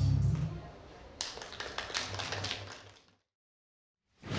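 Dance music with a heavy bass fading out, then a couple of seconds of scattered clapping from a small audience, cut off abruptly into silence.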